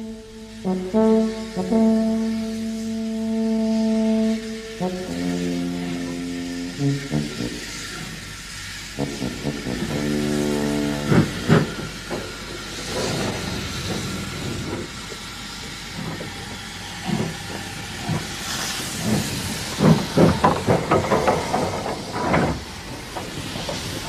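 Music with held notes for the first few seconds, then the steam locomotive GNR Stirling single No. 1 working: irregular sharp exhaust beats with bursts of steam hiss, closest together and loudest in the last few seconds.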